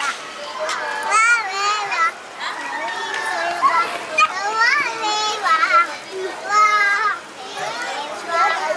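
A toddler's high voice singing in short phrases, some notes held, amid the sound of children playing.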